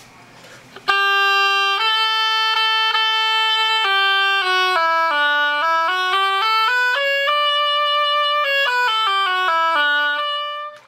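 Oboe played with a newly finished reed, starting about a second in: a quick run of notes stepping down, then up and back down like a scale, to test the reed.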